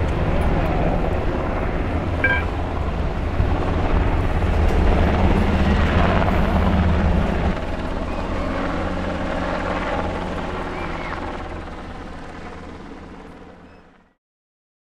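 A steady low engine drone with broad outdoor background noise, fading out over the last few seconds.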